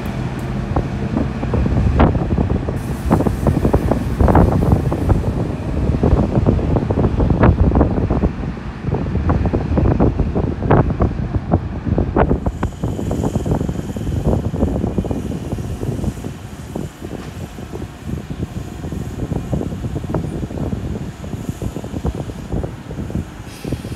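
Diesel passenger train moving through the station: a steady rumble with many irregular clanks and knocks of wheels on the track. It is loudest in the first half and thins out after about twelve seconds.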